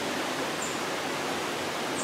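A river flowing close by: a steady, even rush of water.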